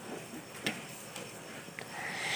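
A few faint, scattered taps and clicks of hand roti-making: dough worked in a steel bowl and dough rolled on a board, over quiet room noise.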